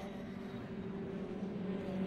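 Racing pickup truck engines running on track, heard as a steady drone over road noise, getting a little louder toward the end.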